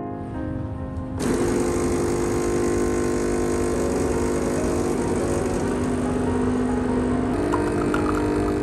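Planit home espresso machine's pump starting abruptly about a second in and buzzing steadily as it pushes water through the portafilter to brew a shot into the mug.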